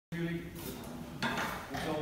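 A person's voice talking, mostly speech in the room.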